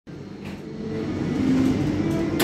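Siemens Taurus electric locomotive starting to pull away, heard from the coach right behind it: a low rumble with electric humming tones that change pitch, growing steadily louder.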